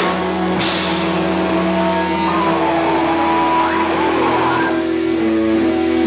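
Live rock band with electric guitars holding sustained, ringing notes, and a cymbal crash about half a second in.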